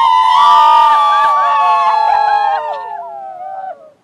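Several women's voices crying out together in one long, high, loud shout. It holds for about three seconds, then the voices slide downward and break off just before the end.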